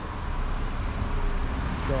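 Street noise: a steady low rumble of road traffic.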